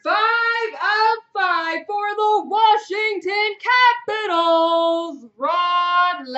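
A high-pitched voice singing in a wordless sing-song, in short phrases with a couple of longer held notes in the second half.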